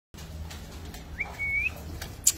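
A single short high whistle about a second in, sliding up and then held for half a second, over a low steady hum.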